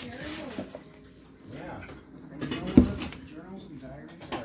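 Indistinct voices talking in a small room, with one sharp thump a little under three seconds in.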